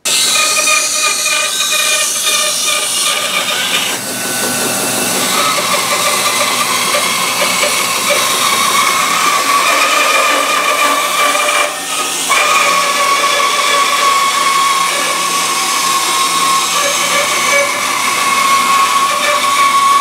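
Bandsaw running and cutting through mahogany guitar neck blanks: a steady tone over the hiss of the blade in the wood. The sound dips briefly about four seconds in and again around twelve seconds.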